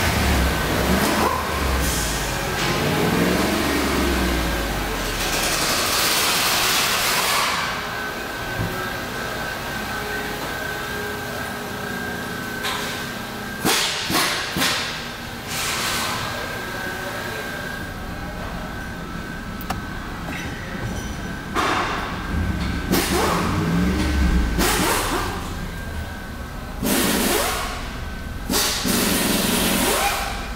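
2008 Jeep Grand Cherokee engine idling steadily, with several knocks and bumps partway through.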